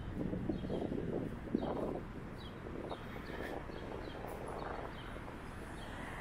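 Street ambience: a steady low rumble of traffic, with a small bird chirping repeatedly in short high notes, about one every half second. A single sharp click sounds about one and a half seconds in.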